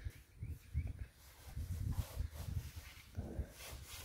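Faint, uneven low rumbling as a stripped car body is pushed round on a vehicle lift, with a brief faint grunt-like voice sound about three seconds in.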